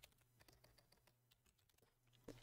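Faint computer keyboard typing: a run of light key clicks over a low steady hum.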